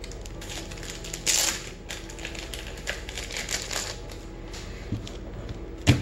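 Rigid plastic card holders clicking and clacking against each other as a stack of sleeved baseball cards is handled and sorted, with a rustling shuffle about a second in and a sharp click just before the end.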